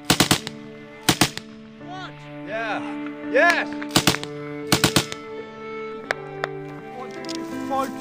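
Machine gun firing short bursts of two or three rounds, about five bursts in the first five seconds, then only a couple of single shots. A music track plays steadily underneath.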